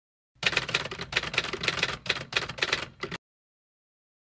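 Typewriter sound effect: a quick run of mechanical key strikes lasting about three seconds, starting abruptly and stopping abruptly.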